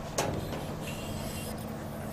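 Steady low outdoor background hum with a single sharp knock about a quarter second in.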